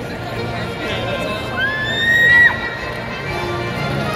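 Arena crowd noise with one loud, high whoop from someone in the crowd about a second and a half in. The whoop rises, holds for about a second and breaks off sharply as graduates are cheered at the end of the ceremony.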